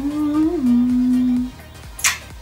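A woman humming with her mouth closed: one held note that rises slowly, slides down a little about halfway through, then holds and stops about a second and a half in.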